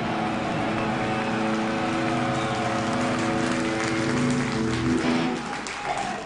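A live metal band holds one long, ringing chord on amplified instruments, which stops about five seconds in and leaves a quieter, noisier stretch.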